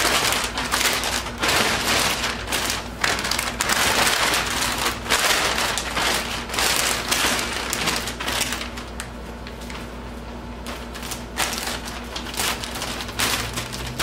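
Thick plastic sheeting crinkling and rustling in irregular bursts as it is folded and smoothed around a mattress by hand. The crinkling is busiest through the first half and thins to scattered rustles in the second half.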